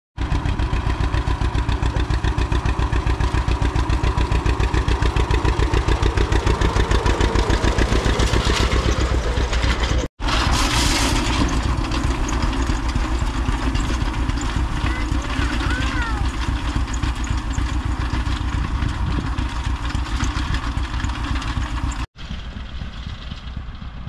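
Old tractor engine running with an even, rapid pulsing beat as it pulls a hay rake. The sound breaks off sharply twice, and after the second break the engine is fainter.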